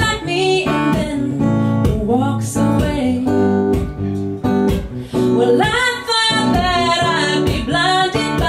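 A woman singing live over a strummed acoustic guitar; the voice drops out for a few seconds midway, leaving the guitar alone, then comes back near the end.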